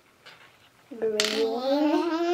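A young child's voice holding one long drawn-out note, starting about a second in, its pitch slowly rising.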